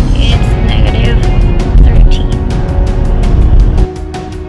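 A car radio playing rock music with a steady drum beat and vocals, over the low rumble of the car. Near the end it cuts abruptly to quieter music.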